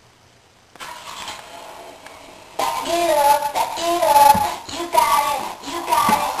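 A child singing a tune, starting about two and a half seconds in; before it there is only faint room hiss.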